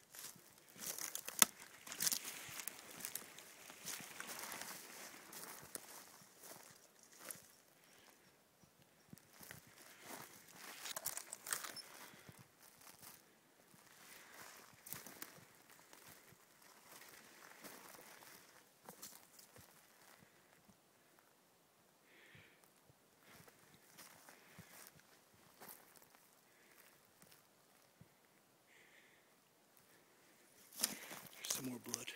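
Footsteps of a person walking slowly over a forest floor of needles, twigs and deadwood, with irregular crunches and snaps and conifer branches brushing past. It is busier and louder in the first dozen seconds and quieter and sparser toward the end.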